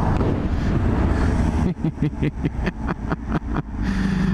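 Honda Hornet inline-four motorcycle engine running under the rider, with wind and road noise. From about halfway a rapid, regular pulsing of about six beats a second sets in, with the pitch sinking slightly as the bike slows.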